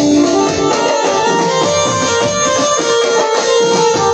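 Live garba band playing an instrumental passage: a sustained melody line over a steady drum beat, with no singing.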